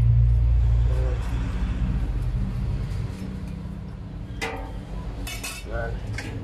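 A cleaver's metal blade clinking against a stainless-steel basin a few times near the end, as meat is cleaned by hand in water. Under it runs a steady low hum, loudest in the first couple of seconds.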